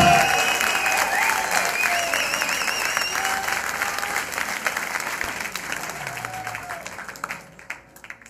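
Audience applauding after a live performance, with a wavering whistle in the first few seconds. The clapping thins and fades out near the end.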